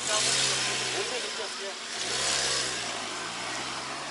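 Police patrol SUV's engine pulling away and accelerating, in two surges about two seconds apart, with rushing tyre and road noise.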